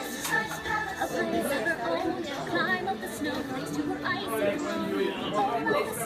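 A television playing a toy commercial's soundtrack: voices over background music, heard through the TV's speaker.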